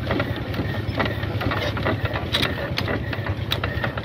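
Indian Petter-type diesel irrigation pump engine being turned over by hand while air is bled from its injector fuel line. It makes a steady low rumble with mechanical clicks about two to three times a second.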